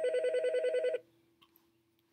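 An electronic phone-style ringer tone with a fast warble, lasting about a second and then cutting off. A faint steady hum runs underneath.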